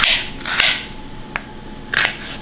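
Chef's knife slicing through a red onion onto a plastic cutting board: about four crisp cuts, roughly half a second apart.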